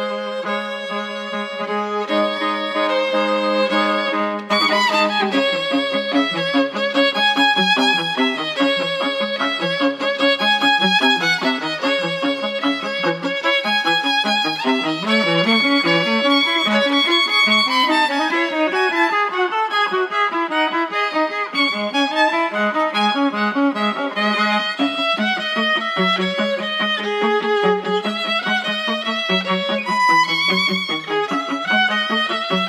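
Violin music: held low notes, then about four and a half seconds in the playing gets louder and breaks into fast runs of notes over a low accompaniment.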